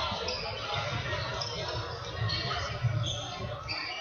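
Indoor football in a sports hall: shoes squeak sharply on the hall floor several times among ball thumps, with a sharper knock about three seconds in. Voices of players and spectators echo through the hall.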